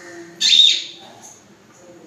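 African grey parrot giving one loud, shrill squawk about half a second in, lasting about half a second and dropping in pitch at the end.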